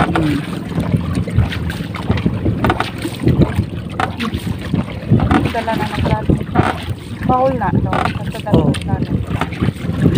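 Engine of a wooden outrigger boat running with a steady low hum, with voices talking over it and a few knocks.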